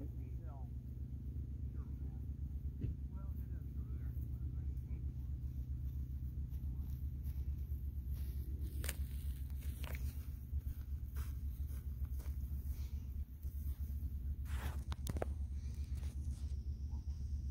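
Steady low rumble of outdoor background noise, with faint distant voices in the first few seconds and a few sharp clicks near the end.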